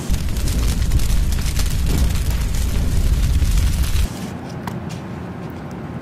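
A loud, deep rumbling boom sound effect that lasts about four seconds and cuts off suddenly, followed by quieter room noise with a few small clicks.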